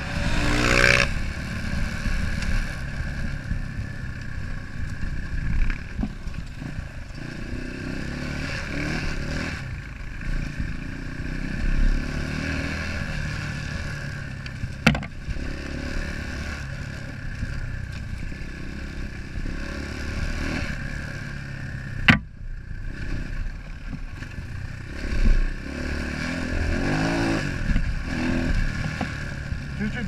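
Enduro dirt bike engine running at riding speed, with clatter from the bike over the rough track. The revs climb at the start and again near the end, and there are two sharp knocks about halfway through.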